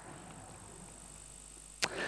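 A pause in a talk: faint room tone through the PA, a low steady hiss with a faint high tone. Near the end there is a sharp mouth click as the speaker draws breath to go on.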